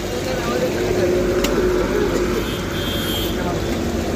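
Busy street-stall ambience: a steady low rumble of traffic and background voices over chicken sizzling in a wok of deep oil, with one sharp click about a second and a half in.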